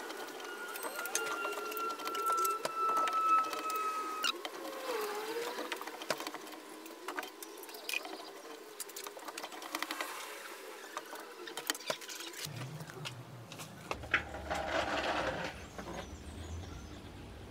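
Large chef's knife cutting cantaloupe and cubes being dropped into a wooden bowl: a run of irregular soft clicks and taps, with a short scrape-like rustle near the end. A thin steady tone sounds over the first four seconds and cuts off suddenly.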